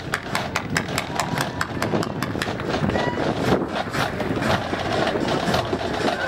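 Military marching band's drumline playing a marching cadence: a quick, even run of sharp snare drum strikes, several a second, with no melody from the horns, over a murmur of crowd voices.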